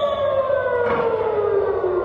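Civil-defence air-raid siren sounding one long wail whose pitch slowly falls, the warning for incoming rockets.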